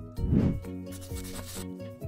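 Silicone spatula scraping puréed black beans out of a plastic food-processor bowl: one loud scrape a moment in, then fainter rubbing, over background music.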